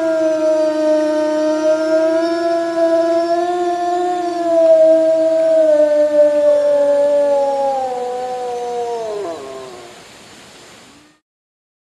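Wolf howling: one long, held howl that slides down in pitch and dies away near the end.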